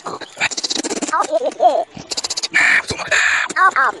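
Speech played back about four times too fast, turned into high, squeaky, chattering voice sounds. About halfway through come two stretches of hissy rustling noise.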